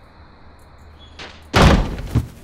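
A door swinging and banging shut about one and a half seconds in, with a short swish just before the bang.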